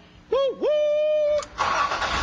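A two-part 'woo-woo' wail: a short call that dips in pitch, then a tone that rises and holds steady for most of a second. About a second and a half in, a car engine's noise takes over.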